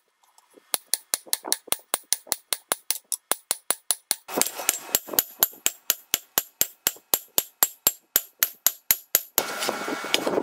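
Steel hammer striking a red-hot scimitar blade on an anvil in rapid, even blows, about five a second, after a short pause at the start. From about halfway a rushing noise rises under the blows and grows louder near the end.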